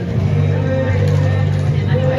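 Busy city street: a steady low hum with voices around it.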